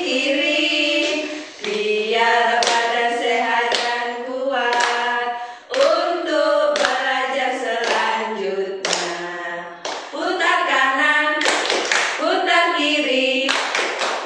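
A group of voices singing a children's action song together, with sharp hand claps falling in with the song several times.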